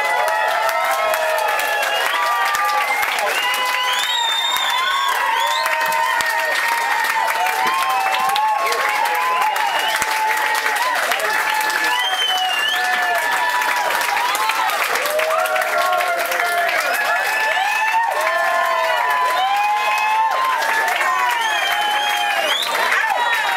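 Audience clapping and cheering at the end of a song, with many voices whooping and shouting over the applause.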